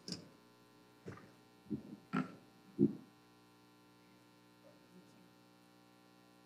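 Low, steady mains hum, with a few brief faint sounds in the first three seconds.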